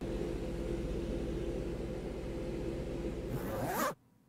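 Music-video intro sound design: a dense noisy drone with two held low tones and a fast low pulse. Near the end it swells into a rising sweep and cuts off abruptly as the title card appears.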